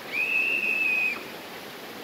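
A high, steady whistle-like tone held for about a second, over the steady rush of a waterfall.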